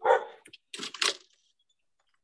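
A dog barks once, sharply, heard over a video-call audio line. A short spoken "yes" follows about a second in.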